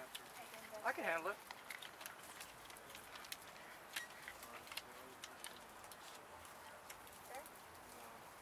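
A short burst of a person's voice about a second in, over a quiet background of scattered light clicks and taps.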